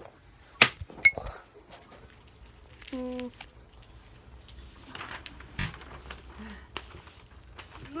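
Handling noise from a phone being moved: two sharp clicks about half a second apart, the second with a short metallic clink. Scattered soft knocks and rustles follow.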